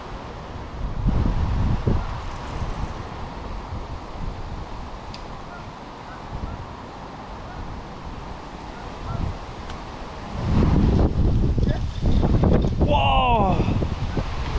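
Wind buffeting the microphone outdoors in gusts, about a second in and again more strongly from about ten seconds, with a steadier hiss between them. Near the end comes a short call that rises and falls in pitch.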